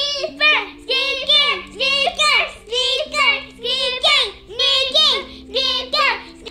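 A child's high-pitched voice singing a string of about ten short wordless notes, each rising and falling, over faint background music.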